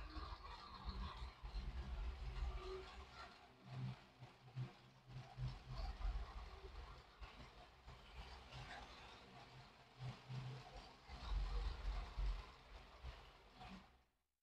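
Motorised LEGO City 60337 express passenger train running round an oval of plastic track on a wooden table, its motor and wheels making a continuous low rumble that swells and fades as the train circles.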